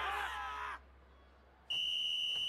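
A referee's whistle blown in one long, steady, shrill blast starting near the end. It comes after a short noisy burst in the first moment and a near-quiet gap.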